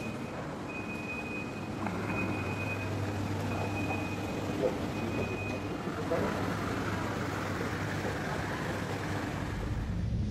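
Airport terminal background noise: a steady low hum under a general din, with a high electronic beep sounding about five times in the first six seconds.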